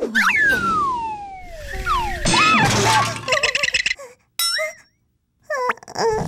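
Cartoon sound effects: a long falling whistle-like glide, then a loud crash about two and a half seconds in, followed by short warbling cartoon-character vocalizations.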